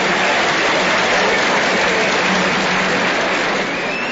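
Large concert audience applauding, a dense, even clapping that swells in at the start and eases off near the end.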